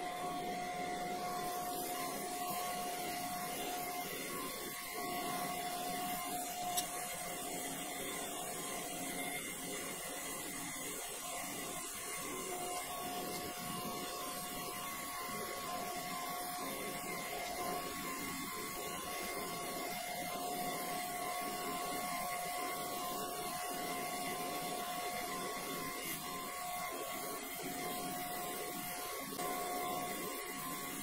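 Cam grinder finish-grinding a main journal of a Viper V10 camshaft: the wheel runs steadily against the turning journal under flowing coolant, a constant whine over a hiss.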